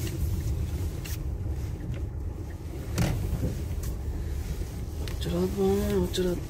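Steady low rumble of a car's engine and tyres heard from inside the cabin while driving, with a couple of light clicks.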